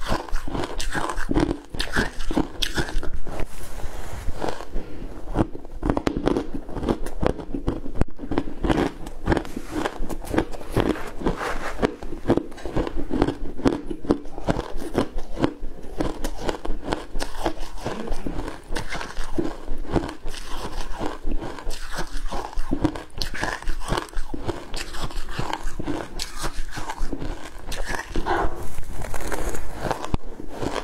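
Close-miked crunching and chewing of crushed, coloured ice: a dense, continuous stream of crisp crunches as mouthful after mouthful is bitten and chewed.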